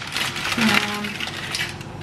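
A plastic packet of dried noodles crinkling and rustling as a hand rummages in it and pulls out a dried noodle nest, the crackle thinning out near the end.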